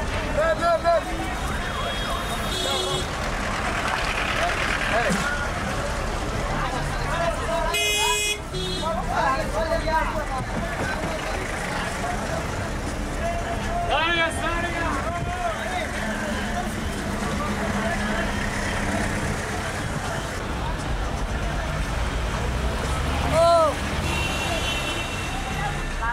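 Busy city street heard from inside a moving vehicle: steady traffic noise with people's voices calling out, and a vehicle horn tooting about eight seconds in.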